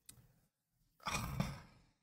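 A man's short breathy sigh about a second in, after a faint click at the start.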